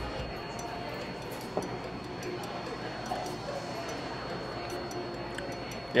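Quiet background ambience of faint music and distant voices, with a few light ticks and a faint steady high tone.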